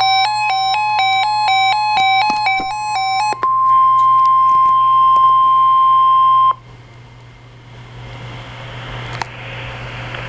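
A NOAA weather alert radio sounding a tornado watch alert: a quick repeating pattern of alternating beeps runs over a steady high tone. About three and a half seconds in, the beeping stops and the steady tone carries on alone and louder: the 1050 Hz Weather Radio warning alarm tone, which cuts off suddenly about three seconds later to a quiet broadcast hiss.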